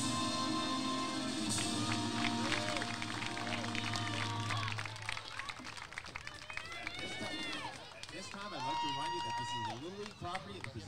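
The national anthem played over the ballpark loudspeakers, ending on a long held final chord about five seconds in. Players and spectators then cheer and shout, with a few long drawn-out calls.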